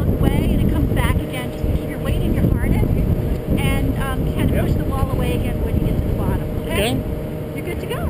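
Wind buffeting a body-worn camera's microphone with a steady, rough low rumble, and people talking indistinctly in the background.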